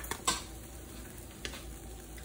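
Egg and cheddar sheet cooking on the hot plate of an open electric contact grill, with a few sharp pops and crackles, the loudest shortly after the start, over a faint steady background.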